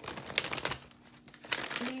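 Oracle cards being shuffled by hand: two spells of quick papery rustling, one in the first second and another near the end.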